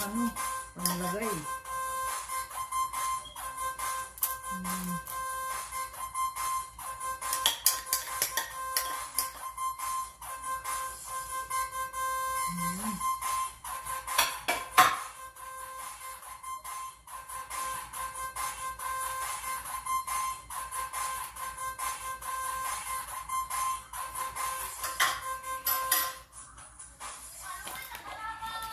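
Background music with a steady held tone that cuts off near the end, over scattered clicks and knocks and a few brief bits of voice.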